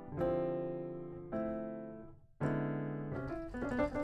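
Keyscape virtual piano playing chords, a new chord struck about once a second and each left to fade. Near the end a quicker, busier run of notes comes in.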